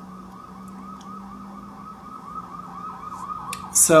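Emergency vehicle siren in a rapid yelp, its pitch sweeping up and down about four times a second, over a low steady hum; it fades out as a man's voice begins near the end.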